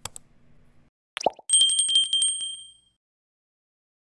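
Subscribe-button animation sound effect: a faint click, a quick downward pop about a second in, then a bright bell ring with a rapid trill that fades out over about a second and a half.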